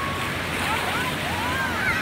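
Ocean surf washing into the shallows, a steady rushing wash, with distant voices calling out over it in the second half.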